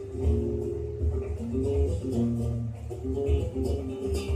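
Background flamenco music led by plucked acoustic guitar, notes moving over a pulsing low beat.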